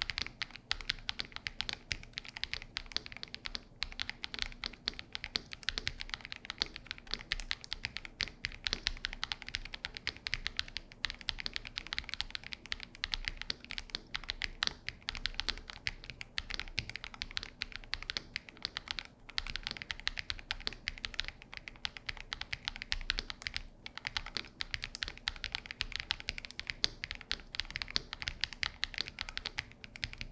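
Continuous typing on a CIY GAS67 gasket-mounted keyboard with lubed KTT Kang White linear switches, a polycarbonate plate with silicone foam dampening, and GMK cherry-profile ABS keycaps. The keystrokes come as a dense, steady run of clacks with a few brief pauses.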